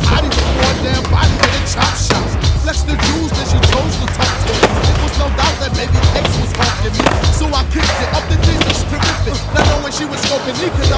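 Background music with a steady heavy bass beat, mixed with the sound of skateboards rolling on a concrete skatepark floor and repeated sharp board clacks.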